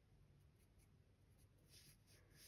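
Near silence, with the faint scratch of an HB graphite pencil drawing on paper near the end.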